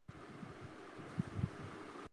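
Faint hiss and room noise from an open microphone on a video call, switching on and off abruptly, with a couple of soft low thumps about a second and a half in.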